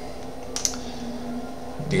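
A single sharp click at the computer a little over half a second in, over a steady low electrical hum.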